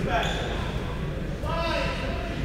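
Basketball gym sound in a large, echoing hall: indistinct voices of players talking, with basketballs bouncing on the hardwood floor.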